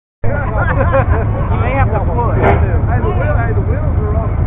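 Several people talking over one another, with a steady low rumble underneath.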